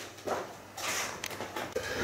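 Soft rustling and a few light clicks and knocks as a person moves out of and back into a desk chair, handling things at the desk.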